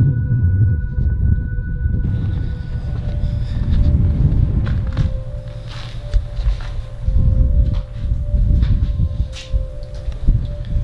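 Background music of held, eerie drone tones that change pitch about two seconds in, over a loud low rumbling noise, with a few brief crunching steps later on.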